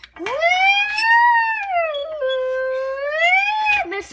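A child's voice imitating an ambulance siren: one long 'woo' that rises, sinks, holds and rises again, then cuts off just before the end.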